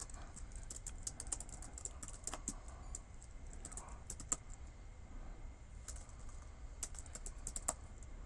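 Typing on a computer keyboard in quick bursts of key clicks with short pauses between, a few keystrokes sharper than the rest.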